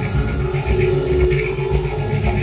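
Electronic music: pulsing low bass under a held mid-pitched tone.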